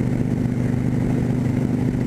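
Cruiser motorcycle's engine running steadily at an even cruising speed, with wind and road noise under it.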